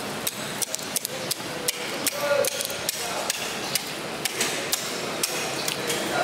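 A knife or cleaver chopping on a wet wooden cutting block as a tuna is broken down. The knocks are sharp and irregular, about two or three a second.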